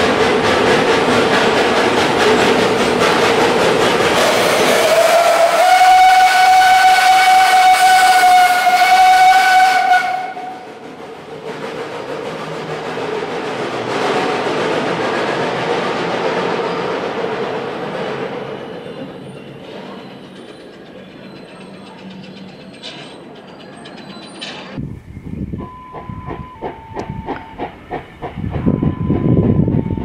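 Kittel-Serpollet steam railcar hissing steam, then one long blast of its steam whistle, starting about five seconds in and lasting some five seconds. After the whistle the steam hiss goes on more softly as the railcar pulls out, fading away. Near the end a run of short two-note tones sounds over a rising rumble.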